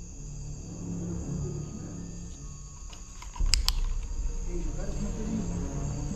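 Two sharp knocks about three and a half seconds in: a thrown piece of wood striking a wall close by. They are followed by low rumbling handling and movement noise, over a steady chirring of crickets.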